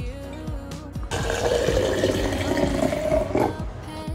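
Liquid poured into a glass jar: a loud splashing pour that starts about a second in and stops abruptly about two and a half seconds later, its pitch creeping slightly upward as the jar fills. Pop music with a steady beat plays underneath throughout.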